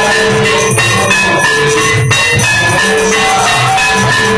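Temple aarti music: ringing metal bells and gongs held over a drum beat of about two strokes a second.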